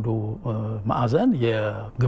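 Speech only: a man talking in Amharic.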